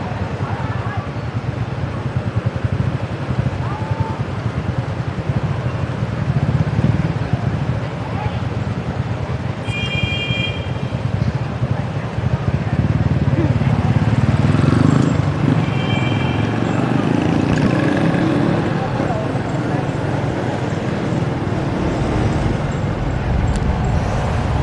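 City street traffic at an intersection, a steady low rumble of passing motorbikes and cars. A vehicle horn gives two short beeps, about ten seconds in and again about six seconds later.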